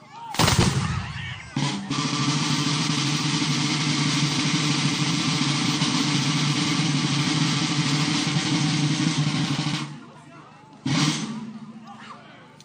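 Black-powder musket shots in a marching salute: a loud report about half a second in and another just after, then about eight seconds of steady rolling sound, a drum roll or rapid rolling fire, ending just before ten seconds, and a last shot near the end.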